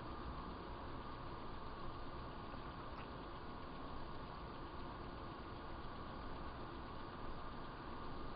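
Faint, steady background noise of road traffic going past, with a thin steady whine underneath.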